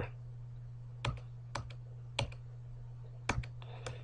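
Faint computer keyboard keystrokes, about five separate clicks with two in quick succession near the end, from keys pressed to cycle through open windows in the task switcher. A steady low hum runs underneath.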